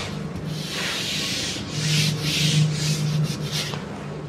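A whiteboard eraser wiped over the board in a series of quick back-and-forth strokes, rubbing off marker writing.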